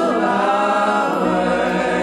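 Gospel praise-team vocalists singing a sustained, held chord in harmony over band accompaniment; a low bass note comes in about halfway through.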